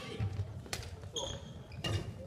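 Footfalls and short court-shoe squeaks on a wooden gym floor, with two sharp knocks a little over a second apart, in a large reverberant hall with faint voices.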